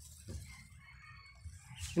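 Quiet outdoor background with a faint chicken clucking briefly, over a low steady rumble.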